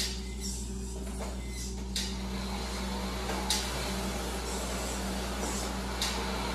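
Small competition robot's electric motors and mechanism whirring over a steady electrical hum, with a few sharp clicks and clatters, the loudest about two seconds in and again about three and a half seconds in.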